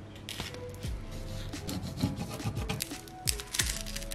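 Hands pressing and rubbing clear transfer tape with vinyl decals down onto a kraft paper bag, giving irregular scratchy rubbing, paper rustles and small taps, over faint background music.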